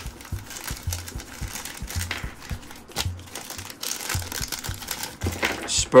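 Clear plastic bag crinkling and rustling in the hands as it is torn open, with small irregular clicks. Background music with a soft low beat runs underneath.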